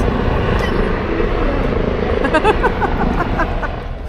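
Steady rumbling background noise, with a few faint spoken words about halfway through.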